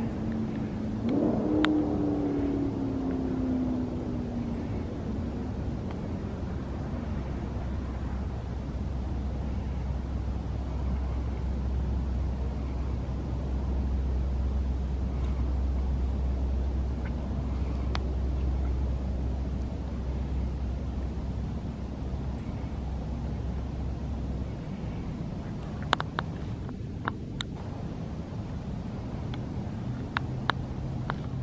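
Steady low rumble of a motor vehicle's engine that cuts off about 25 seconds in, with a few sharp clicks near the end.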